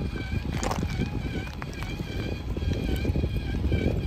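Electric motor whine from an RC rock crawler (Traxxas TRX-4 with a Hobbywing Fusion Pro brushless system) crawling slowly over broken brick rubble. The whine is steady and dips in pitch now and then as the throttle changes. Tyres grind and crunch on the bricks, with a burst of rattling just under a second in, over a constant low wind rumble on the microphone.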